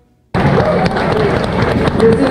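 Live club crowd clapping and cheering, loud and crackly through a phone microphone, cutting in suddenly about a third of a second in.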